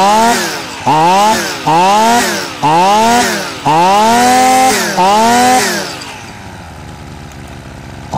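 Robin NB 145 brush cutter's two-stroke engine being revved in six quick throttle blips, the pitch rising sharply and falling back each time, the fifth held about a second longer. It then drops back to a steady idle for the last couple of seconds.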